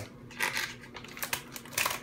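Plastic blind-bag packet crinkling as it is handled and snipped open with scissors: a few short, sharp crackles and snips, about half a second in and again near the end.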